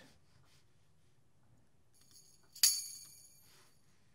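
A single sampled tambourine hit, its jingles ringing briefly, from a Dr. Octo Rex loop in Propellerhead Reason, sounding about two and a half seconds in; otherwise quiet.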